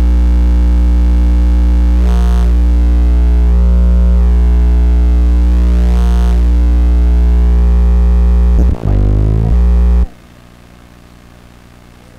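Loud electronic drone hum in many layers, swelling about every four seconds. Near the end its pitch sweeps briefly, then it drops suddenly to a much quieter steady hum.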